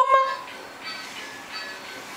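An adult's sung note on the word "lakum" ("stand up") trails off in the first half second, then a quiet stretch of faint room noise.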